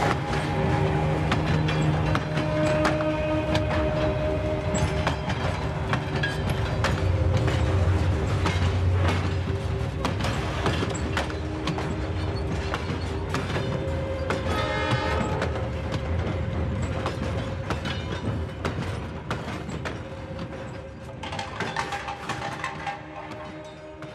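A passenger train pulling out and rolling past, its wheels clicking over the rail joints, the sound fading away over the last few seconds as the last coach leaves. Background music plays over it.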